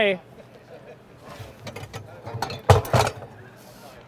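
Cookware being rummaged and moved about below a counter: a few scattered knocks and clatters, the loudest pair of sharp knocks about three seconds in, over a low steady hum.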